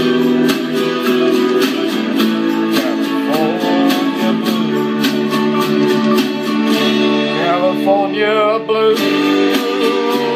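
Karaoke backing music in an instrumental passage between sung lines: strummed acoustic guitar over sustained chords, with a wavering lead melody about eight seconds in.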